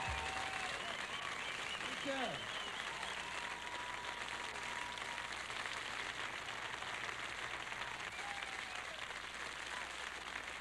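Concert audience applauding steadily, with a few voices calling out, one with a falling shout about two seconds in.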